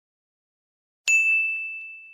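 A single bell-ding sound effect about a second in: one sharp strike that rings on a single high tone and slowly fades.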